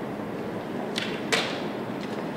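Two sharp clicks about a third of a second apart, the second louder, typical of chess pieces and clock buttons at blitz boards. They sit over the steady noise of a large tournament hall.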